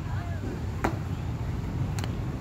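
Golf clubs striking balls off a driving-range hitting mat: two sharp clicks, about a second in and again near the end, over a steady low rumble of wind and outdoor noise.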